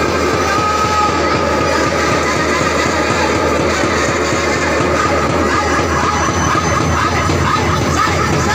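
Electronic keyboard playing under a loud, dense din of many people praying aloud at once.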